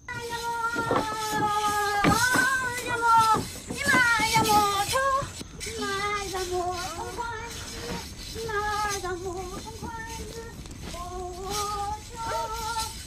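A high-pitched voice singing a slow, wavering melody in long held notes that bend up and down, with sharp percussive knocks during the first five seconds.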